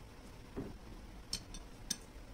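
Metal spoon clinking lightly against a ceramic plate while scooping wet paper pulp: a soft knock about half a second in, then two faint, short clinks near the end.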